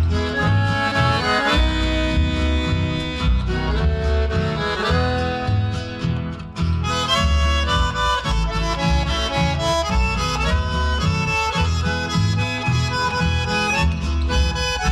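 Instrumental chamamé passage: an accordion carries the melody over guitars and a rhythmic bass line, with a brief drop in the music about halfway through.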